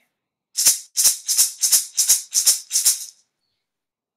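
Hand rattle shaken in an even beat, about three shakes a second, then stopping about three seconds in.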